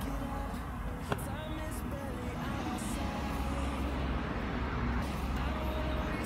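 Road traffic: a low rumble of passing vehicles that grows louder through the second half, with one sharp click about a second in.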